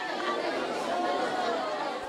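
Crowd of people chattering, many voices talking at once with no single voice standing out.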